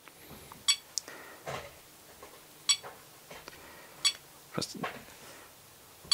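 ToolkitRC M6 battery charger beeping as its menu buttons are pressed: three short, high beeps spaced a second or two apart.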